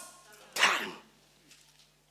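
A single short, harsh, breathy vocal sound from a person about half a second in, falling away quickly.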